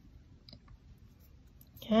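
A few faint, short clicks of fingers pressing and handling a tightly rolled newspaper coil as its freshly glued end is held down.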